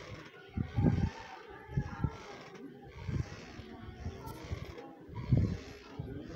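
Faint, indistinct voices in the background, with a few short low thumps: one near the start, one about two seconds in, and one near the end.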